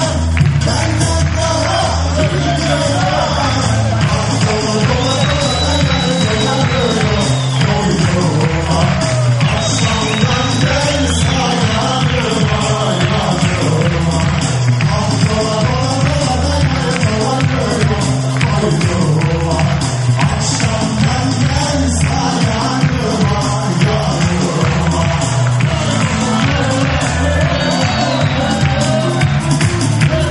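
Loud live band music with a man singing over a steady beat.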